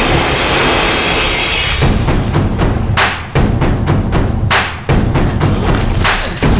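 Action-film soundtrack: a big splash of water at the start, then dramatic background score with heavy thudding percussion. Twice, a rising swell cuts off suddenly.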